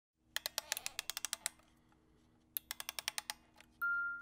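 Keyboard typing: two quick bursts of rapid key clicks, about ten a second, with a short pause between. Near the end a bell-like chime note begins.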